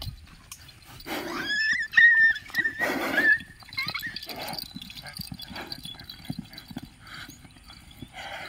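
A young male water buffalo snorting close by: two loud, breathy blasts about two seconds apart, with a high wavering tone sounding between them, then a run of shorter, quieter snorts.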